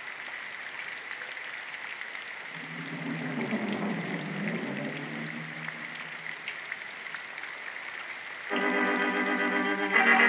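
Old cartoon soundtrack with a steady hiss and thin whine. About two and a half seconds in, a low phrase slides and wavers in pitch. Near the end a sustained organ chord comes in.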